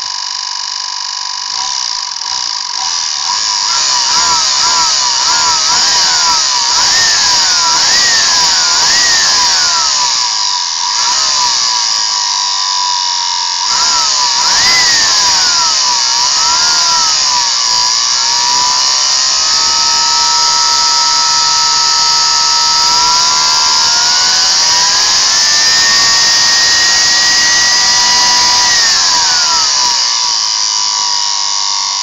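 Vacuum cleaner's brushed universal motor, fed from a variac straight to its brushes, running with a rushing hiss and a whine that swings up and down in pitch several times as its speed changes. Later the whine climbs, holds higher for a few seconds, then drops near the end.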